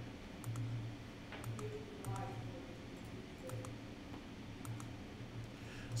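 Computer mouse clicking: about a dozen quiet, irregular single clicks while ducts are placed in CAD software, over a faint low hum that comes and goes.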